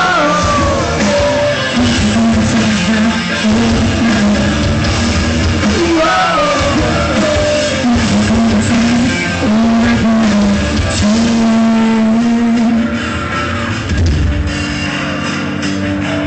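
Rock band playing live, loud and steady: electric guitars with a sung vocal line, recorded from within the audience.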